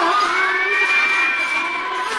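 Many voices singing a Balan devotional chorus loudly together, with one high note rising and held for about a second and a half.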